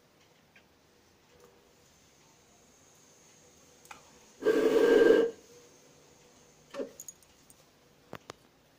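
A single loud, short whoosh of ignition, just under a second long, about four and a half seconds in, as burning matches are put to a fuel-filled plastic bottle. A shorter, weaker scrape-and-flare follows near the end.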